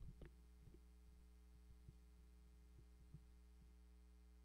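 Near silence: a steady low electrical hum with a few faint, soft thumps scattered through it.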